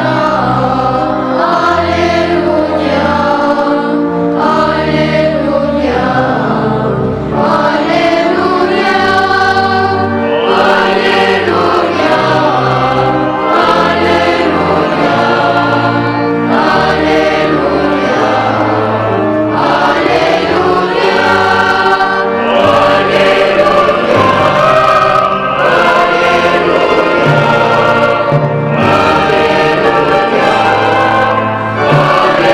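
A choir singing a liturgical chant with instrumental accompaniment, sustained bass notes changing every second or two under the voices.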